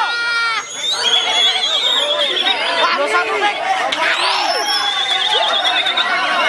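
Several caged white-rumped shamas singing at once, a dense tangle of whistles and trills, with a rapid high warbling trill held for over a second twice, about a second in and again near the end. People shout underneath.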